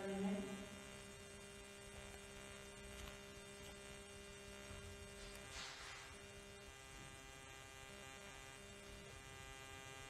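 Faint, steady electrical hum with a buzzing edge. Its lower tone breaks up and comes and goes from about two-thirds of the way in, and a brief soft hiss passes just after the middle.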